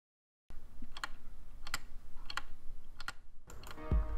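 Wooden gear wall clock ticking: four sharp, evenly spaced ticks, a little under a second apart. Music comes in near the end.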